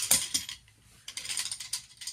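Collapsed avalanche probe's segments clicking and rattling as it is slid out of its sleeve and handled: a few sharp clicks at the start, a short lull, then a quick run of clicks over the last second.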